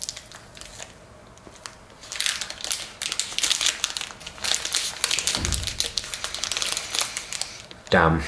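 Foil-and-plastic protein bar wrapper crinkling in the hand in dense, rapid crackles from about two seconds in, while the bar is bitten and chewed. A brief low sound comes near the middle.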